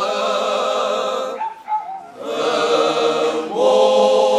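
Unaccompanied male choir singing Cante Alentejano in slow, drawn-out harmony. The voices break off about a second and a half in for a short pause with a faint brief sound in it. The singing then resumes thinly, and the full choir swells back in near the end.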